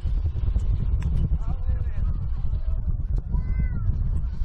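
Steady low rumble of wind on the microphone in an open field, with faint distant voices and calls about a second and a half in and again near the end.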